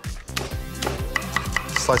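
A knife slicing a garlic clove on a wooden chopping board, starting about a second in as a run of quick, evenly spaced knocks, about five a second.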